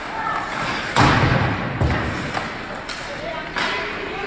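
Ice hockey play: a loud thump against the rink boards about a second in, with a low rattle trailing after it, then a few sharper clacks of sticks and puck, over voices in the arena.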